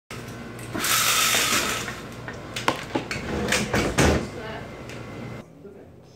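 Horizontal slatted window blinds being pulled open by the cord: a rattling rush of slats, followed by several sharp clacks.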